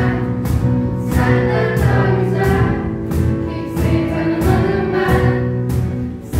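A group singing together to strummed acoustic guitars, with a cajón striking a steady beat.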